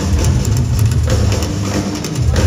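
Live heavy metal band playing loud, with a booming low end and a drum kit with cymbal strikes over it.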